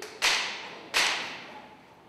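Two sharp smacks about three-quarters of a second apart, each followed by a short echo in a large hall.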